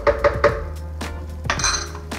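A small metal spoon tapping against the rim of a blender's plastic jar, a few light clicks, then a brighter ringing clink near the end, over background music.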